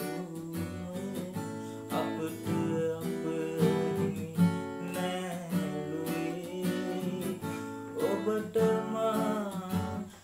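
Acoustic guitar strummed steadily as accompaniment, with a man singing a Sinhala song over it. The singing is most prominent near the end.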